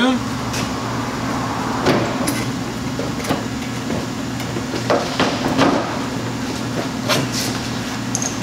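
Scattered plastic clicks and knocks as a Chevrolet Tahoe's front bumper cover and headlight housing are pulled and worked loose by hand, over a steady low hum.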